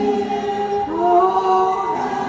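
A small group of voices singing a slow song together in unison, holding long notes, stepping up to a higher note about a second in.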